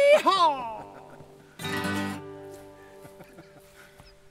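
Acoustic guitars ending a song: a whooping voice in the first half second, then the final chord ringing out and slowly fading. A short loud burst comes about halfway through.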